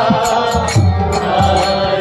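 Kirtan music: a harmonium playing sustained chords over a steady rhythm of low beats and short, bright percussive strikes, with chanting voices.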